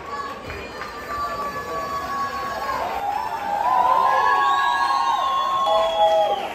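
Audience cheering, with many overlapping high-pitched held whoops and screams that grow louder about halfway through.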